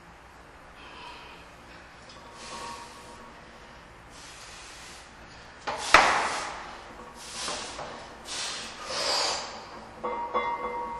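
Sharp bracing breaths from a powerlifter set up under a barbell loaded with about 350 kg in a power rack. Then, just before six seconds in, a loud clank as the bar breaks off the rack pins, followed by three hard strained breaths as he pulls it up.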